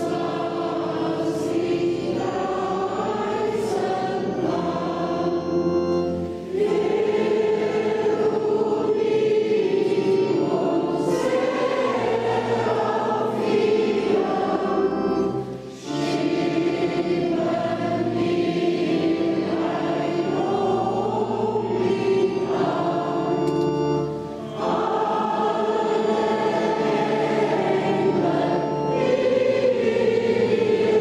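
Many voices singing a hymn together during a church service, in long held phrases with brief pauses between them about every eight to nine seconds.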